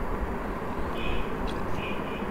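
Steady background noise, with a couple of faint, brief higher sounds about a second in and near the end.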